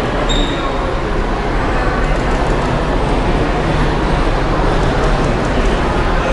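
Loud, steady background noise of a busy event hall, an even rumble and hiss with no clear voices, with one short high beep just after the start.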